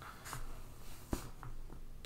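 Hands brushing and sliding on a tabletop as they let go of plastic action-figure stands, with faint rubbing and small ticks and one sharp click a little over a second in.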